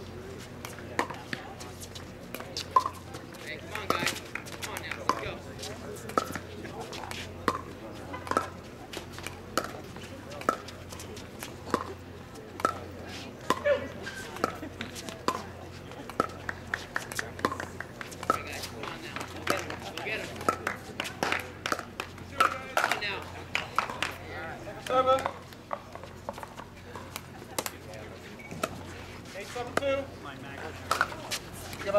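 Pickleball paddles striking a hard plastic ball: a run of sharp pops with a short ring, roughly one a second through the rallies, most frequent in a quick exchange a little past the middle, over background voices.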